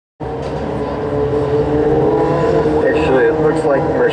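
Engines of small open-wheel dirt-track race cars running on the oval, a steady drone of several held pitches that wavers slightly.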